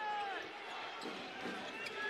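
A basketball being dribbled on a hardwood court under arena crowd noise.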